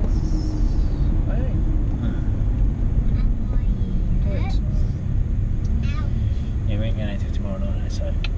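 Steady low road and engine rumble inside the cabin of a moving car, with faint, brief voices now and then.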